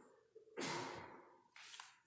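A person's breathing: a long breath that fades out about half a second in, then a shorter breath near the end.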